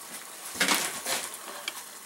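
Water at a boil in a stainless steel cup over a homemade alcohol stove, bubbling and pattering against the metal, with a stronger rush about half a second to a second in.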